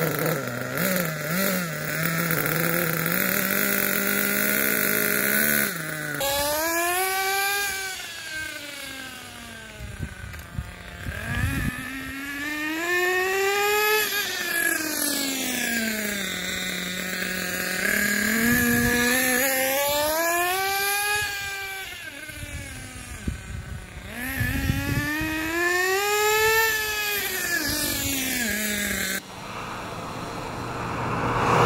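Small nitro engine of a 1/8-scale RC buggy on its last break-in tank, running steadily for the first few seconds, then revving up and down in long sweeps as the buggy drives off and back. The sound cuts off suddenly near the end.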